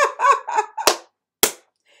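A woman's voice in a few short laughing bursts, followed by two sharp clicks about half a second apart.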